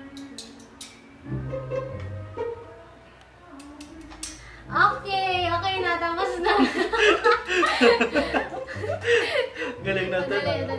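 Light background music for the first few seconds, then loud, hearty laughter from about five seconds in, carrying on over the music.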